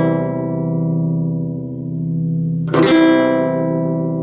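A classical guitar rings with a strummed C chord. The same chord is strummed again with a different pick about three quarters of the way in and rings on. The two strums compare a standard pick, which gives a fuller sound, with a tiny pick, which gives a lighter, brighter sound.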